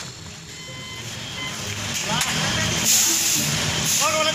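Concrete transit mixer truck engine rumbling steadily on a construction site, growing louder, with workers' voices calling out from about two seconds in and a short burst of hiss around three seconds in.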